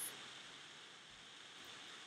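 Faint, steady background hiss (room tone), with no distinct sound event.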